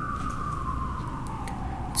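A single electronic tone gliding slowly and steadily down in pitch, the opening sound of a music video's intro.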